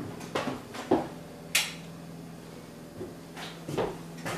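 Footsteps and light knocks in a small room, irregularly spaced, with a sharper click about a second and a half in, over a steady low hum.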